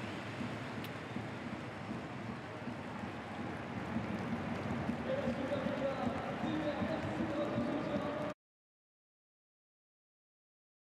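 Football stadium crowd noise, a dense mass of voices, with a held chant of the home supporters swelling about five seconds in. It cuts off suddenly a little past eight seconds.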